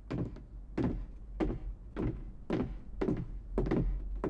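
Boots of two people walking on a wooden floor: steady footsteps, about two a second, some doubled where the two walkers' steps overlap.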